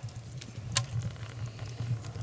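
Small wood fire of split kindling crackling inside a freshly built adobe earth oven, its first fire, with a sharp pop about three-quarters of a second in over a low steady rumble.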